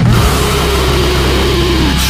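Grindcore recording: distorted guitars hold a sustained note over a steady low drone, the higher note bending downward near the end.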